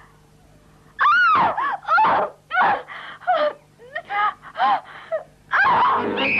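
A woman crying out in the dark: a quick string of short, high-pitched wailing cries and gasps, starting about a second in.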